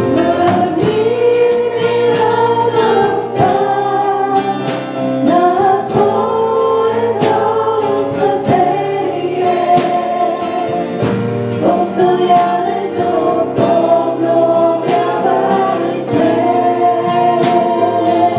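Live gospel worship music: a woman's singing voice, holding long notes, over acoustic guitar and drums keeping a steady beat.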